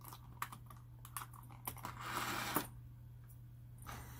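Plastic blister packaging clicking and crackling as a tiny diecast toy car is pried out of it by hand: a few sharp clicks, then a longer crinkling rustle about halfway through.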